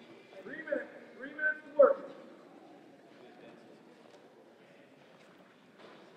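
A voice calls out a few short, unclear words in the first two seconds, the last the loudest, then only faint hall noise remains.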